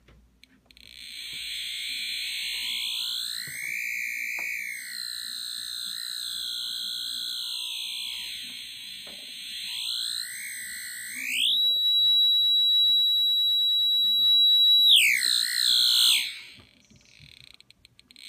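Handheld EMF detector giving off its electronic audio tone, which wavers and glides up and down in pitch, then climbs to a steady high whine for a few seconds before sliding down and cutting off; the pitch follows the strength of the field the meter is picking up.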